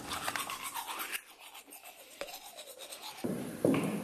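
A scratchy, rasping noise with fine clicks for about the first second, then a quieter stretch with a single sharp click about two seconds in. Near the end, regular thumps begin about two a second: footsteps on a tiled floor.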